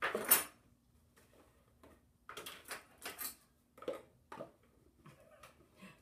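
Kitchen handling noises around a stainless steel mixing bowl. A loud metallic clatter comes right at the start, a few rattles follow about two to three seconds in, and then several light clicks of utensils and spice containers.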